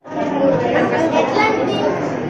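Several people talking over one another in a room, with no single voice standing out: indoor chatter. The sound cuts out for an instant at the very start.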